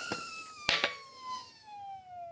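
Bontrager TLR Flash Charger pump's chamber, charged to 100 psi, emptying through a coreless valve into a 32 mm Goodyear Eagle F1 tubeless road tyre: a rush of air with a whistle that falls steadily in pitch as the pressure drops. A single sharp pop about two-thirds of a second in as the tyre bead snaps onto the rim.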